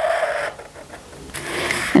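Marker pen drawn along a plastic curve ruler on pattern paper: a squeaky stroke that stops about half a second in, then after a short pause a second, scratchier stroke near the end.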